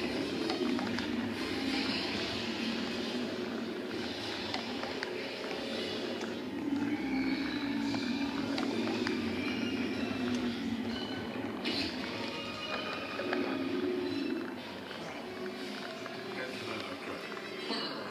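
A film soundtrack playing from a television's speakers: music with voices, heard in the room.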